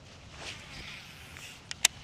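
Two sharp clicks, about a sixth of a second apart, from a baitcasting reel being handled, over a faint rush of wind or water.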